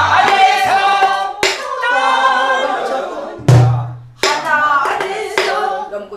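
A woman singing a Korean Namdo folk song in full throat, with a wavering, ornamented voice, beating out the rhythm on a buk barrel drum. Sharp drumstick strokes come a second or two apart, and a deep thud of the drumhead sounds about three and a half seconds in.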